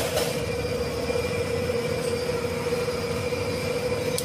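A steady machine hum with a constant high whine over a noisy rumble, unchanging throughout.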